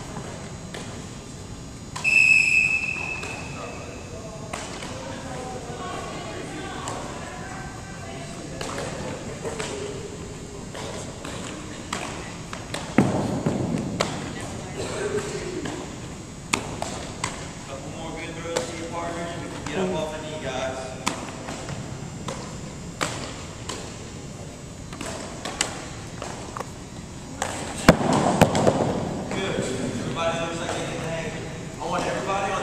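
Softballs thrown between partners, popping into leather gloves and bouncing on a hardwood gym floor: sharp knocks and thuds scattered throughout. Students talk underneath, and a brief high steady squeak sounds about two seconds in.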